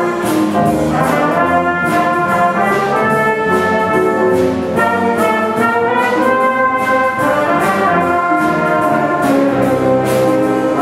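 A middle school jazz band playing live: a horn section carries the tune over piano, guitar and drums, with cymbal strokes keeping a steady beat.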